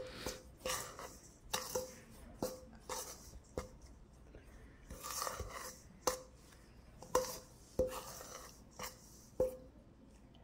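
A metal spoon stirring flour and sugar in a stainless steel mixing bowl: repeated clinks of the spoon against the bowl's side, each with a short ring, about every half second to a second, between soft scrapes through the dry mix.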